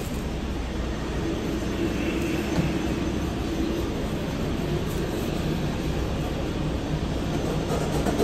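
Steady drone of commercial kitchen equipment and ventilation in a fast-food kitchen, a constant low hum with a faint held tone.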